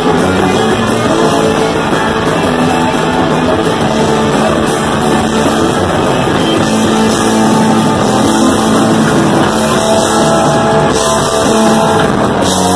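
Punk rock band playing live and loud on electric guitar, bass and drums, an instrumental stretch with no clear vocals.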